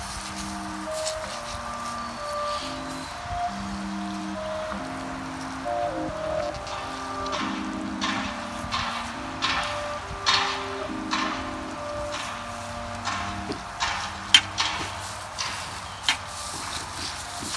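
Instrumental hip-hop beat playing on with no vocals: a slow melody of held notes over sparse drum hits, which grow stronger in the second half.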